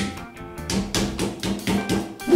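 A wooden rolling pin repeatedly striking slices of filet mignon on a cutting board, pounding them flat in place of a meat mallet, in quick dull strikes several a second. Background music plays underneath.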